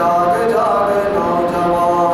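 A young man's voice chanting invocation verses into a microphone, on held, sung notes.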